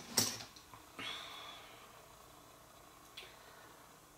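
Faint handling sounds of a Zebco 33 spincast reel and a cut rubber O-ring worked by hand: a sharp click just after the start, a short rubbing sound about a second in that fades away, and a small click near the end.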